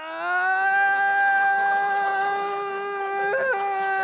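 A man's long, high-pitched cry of pain held on one note, with a brief upward crack about three and a half seconds in.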